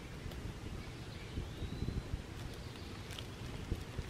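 Rustling and small crackles from dry leaf litter and a plastic bag as chanterelle mushrooms are picked off the forest floor and bagged, over a low rumble of wind on the microphone.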